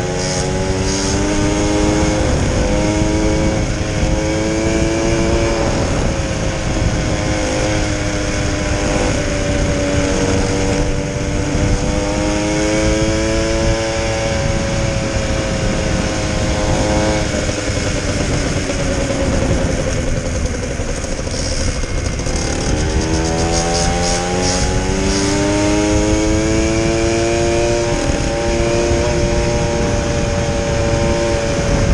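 The small 50cc engine of an Uberscoot Evo 2x stand-up gas scooter running under way. Its pitch falls and climbs again several times as the throttle is eased and reopened, with the deepest dip about 22 seconds in, followed by a long climb back up.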